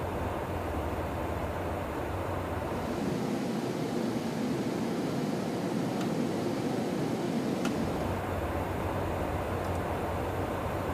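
Steady in-flight jet aircraft noise: a rush of engines and airflow over a low rumble. It changes character about three seconds in, losing its deepest rumble, and returns to the fuller rumble near eight seconds. There are a couple of faint clicks.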